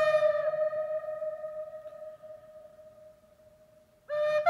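Native American-style wooden flute made by Dr Richard Payne, a held note ending with a slight dip in pitch about half a second in. It then dies away slowly to near silence, and a new note starts at the very end.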